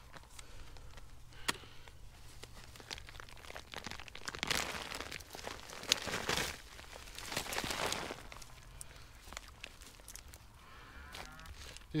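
Gloved hands rustling through dry Jerusalem artichoke stalks and tearing a clump of roots and tubers out of the soil, with scattered snaps and crackles. The rustling and tearing is loudest about four to eight seconds in, as the clump comes up.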